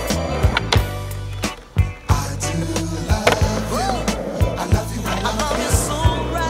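Skateboard wheels rolling on asphalt with sharp clacks of the board against the ground, over a playing disco-soul song with singing.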